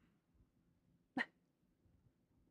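Near silence, broken a little over a second in by one very brief, sharp sound.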